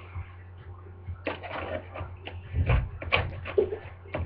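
Rustling and irregular knocks and bumps close to the microphone, with a low thud near the middle, as someone moves right up against the webcam; a low steady hum runs underneath.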